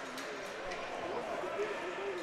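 Ice hockey arena ambience during play: a steady murmur of a small crowd with faint distant voices, and a few light clicks of sticks and puck on the ice.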